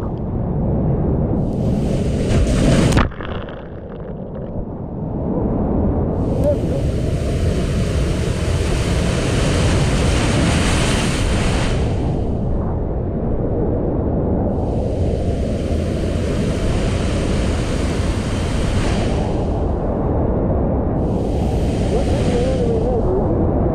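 Ocean surf: waves breaking and washing in as long rushes lasting several seconds each, over a constant low rumble of wind buffeting an action-camera microphone.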